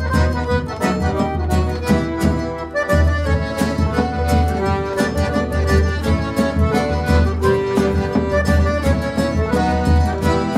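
Four piano accordions playing an instrumental tune together, melody and chords over a steady bass, with a regular rhythmic pulse; the bass drops out briefly about three seconds in.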